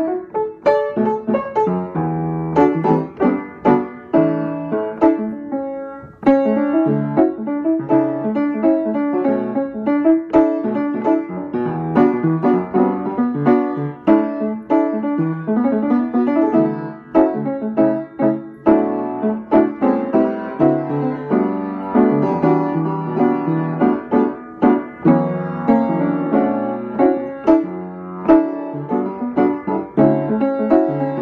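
Upright acoustic piano played solo in an improvised jazz style: a continuous flow of chords and melody notes.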